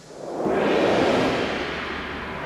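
Whoosh sound effect for an animated logo: a breathy rush that swells up over about half a second, then slowly fades.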